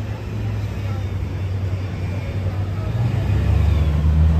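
Street traffic: the low rumble of motor vehicles on the road, growing louder toward the end as a vehicle comes closer.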